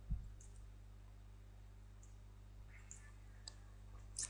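A few faint computer mouse clicks over a steady low electrical hum, with a soft low thump right at the start.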